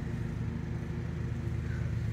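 A motor running steadily: a low, even hum that holds the same pitch and level throughout.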